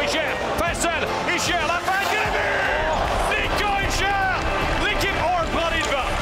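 Ice hockey game sound under background music: voices over the arena crowd, with short sharp knocks of sticks and puck on the ice.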